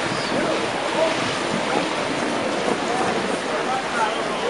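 Steady rush of choppy canal water with wind on the microphone, and indistinct voices talking in the background.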